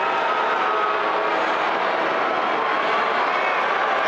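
A large theatre audience booing at a comedian on stage, a steady, unbroken roar of boos through the whole stretch.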